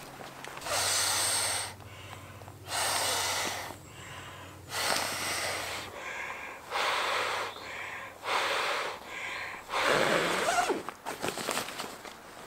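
A person inflating an inflatable sleeping pad by mouth: about six or seven long, forceful breaths blown into the valve, each about a second long and coming roughly every two seconds, with quieter inhales between.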